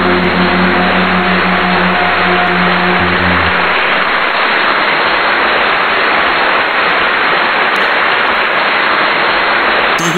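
Loud, steady rushing hiss with no rhythm. Underneath it, the last held notes of a song fade out about three and a half seconds in.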